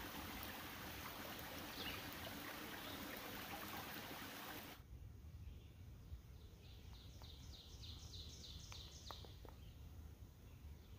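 Shallow creek running over rocks, a steady rush of water that cuts off abruptly about halfway through. Then a quieter woodland where a bird sings a quick series of about a dozen repeated high notes.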